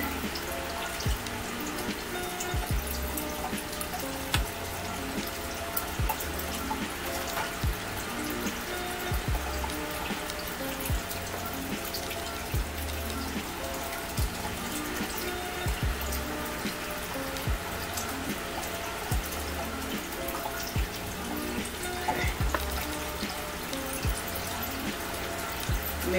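Quiet background music with short held notes over a slow, steady low beat, with a few faint clicks.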